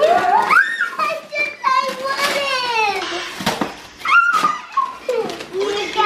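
Young children's excited, high-pitched voices, rising and falling, with no clear words. Brown wrapping paper crackles and tears as they unwrap presents.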